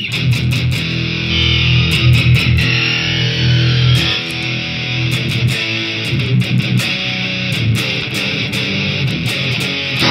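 Electric Les Paul guitar played through a TC-Helicon VoiceLive 3 multi-effects preset, sustained chords thick with effects. A sweep falls in pitch about two to four seconds in, and the sound cuts off suddenly at the end.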